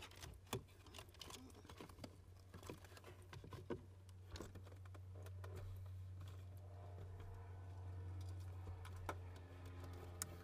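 Faint scattered light clicks of a small plastic electronics module and its wiring being handled and tucked behind a fuse panel, thinning out about halfway through, over a low steady hum.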